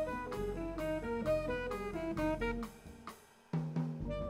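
Jazz quintet playing live: a quick melodic line of short notes over drum kit with snare and cymbals. The music drops away for a moment about three seconds in, then the band comes back in.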